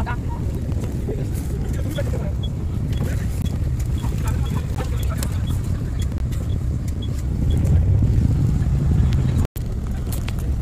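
Steady low rumble of a King Long bus's engine and road noise heard from inside the moving bus, swelling louder near the end. A faint tick repeats about twice a second through the middle, and the sound cuts out for an instant just before the end.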